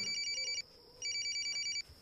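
Phone ringing with an electronic ringtone: two bursts of a rapid high trill, with a short gap between them.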